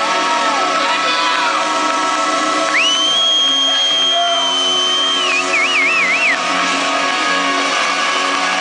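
Rock band letting a sustained closing chord ring out over an arena crowd cheering. About three seconds in, a high piercing whistle slides up, holds steady for about two and a half seconds, then warbles up and down before stopping.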